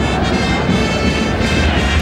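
Football stadium crowd ambience with brass music, such as trumpets, playing steadily through it.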